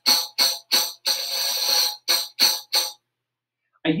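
Tambourine finger roll, the finger skipping across the head to keep the jingles sounding: three short jingle strokes, a roll of about a second, then three more short strokes, stopping about three seconds in.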